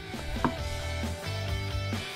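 Background instrumental music with steady held chords, and a single sharp click about half a second in.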